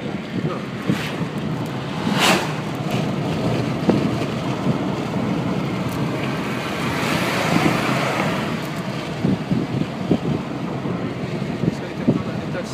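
Steady road and wind noise inside a moving car's cabin, with a short sharp knock about two seconds in and a swell of hiss around the middle.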